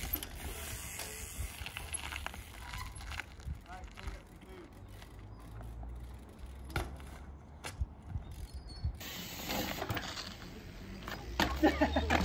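Trials bike freewheel hub clicking as the rider hops and balances, with several sharp knocks of the tyres landing on stone.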